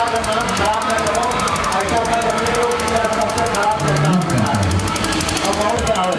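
A fast, even rattling pulse runs under people's voices.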